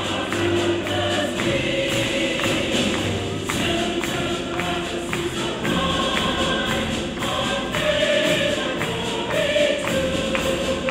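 A choir singing with an orchestra, with hand-clapping along to the beat.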